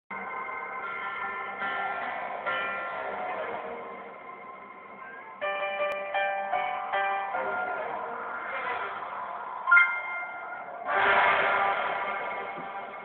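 Instrumental backing track playing a slow ballad intro: ringing keyboard notes and chords struck one after another, swelling louder near the end.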